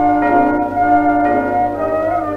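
Orchestra from a 1919 acoustic-era 78 rpm record playing held chords in the song's closing instrumental passage, the chord shifting a few times, over a steady low hum from the old disc.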